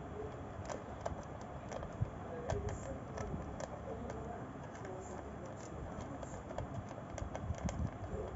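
A cat crunching dry kibble from a bowl, eating hungrily: irregular crisp clicks and crunches, several a second.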